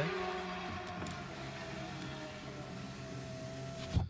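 Music playing from the car's radio through the cabin speakers: a steady melody over a low bass line. It cuts off abruptly at the end.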